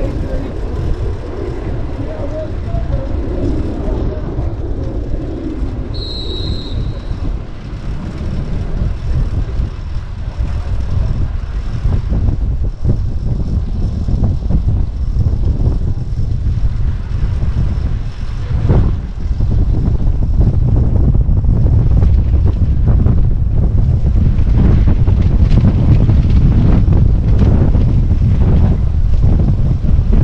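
Wind buffeting the microphone of a track cyclist riding in a pack, a steady low rumble that grows louder in the second half as the pace picks up. A brief high tone sounds about six seconds in.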